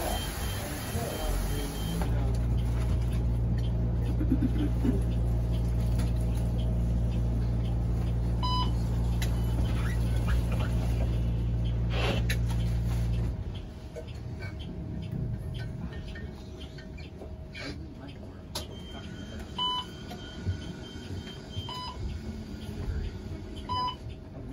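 Muni bus standing at a stop, its on-board machinery giving a steady low hum that starts a second or two in and cuts off suddenly about 13 seconds in. Short electronic beeps sound a few times over the bus's quieter background.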